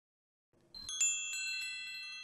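Wind-chime sound effect: several bright ringing notes struck in quick succession, starting about a second in, ringing on and fading. It is a cue that it is the learner's turn to speak.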